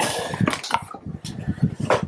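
Cardboard and plastic bagging rustling as a small accessory box holding a bagged power cable is handled, followed by a few light knocks and clicks.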